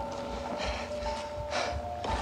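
Footsteps crunching through snow about twice a second, with two short rustling, breathy bursts, as a man hurries down a snowy slope; a steady held music tone runs underneath.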